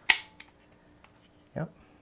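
A magazine snapping home into the grip of an FN 509c Tactical pistol: one sharp click as it seats, followed shortly by a fainter click.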